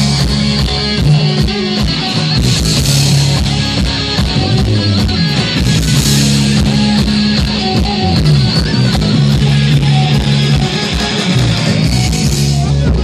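Live hard rock band playing loud through a stage PA: electric guitars over a drum kit keeping a steady beat.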